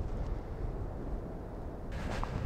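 Wind on the microphone: a steady, low rumbling noise with no distinct events.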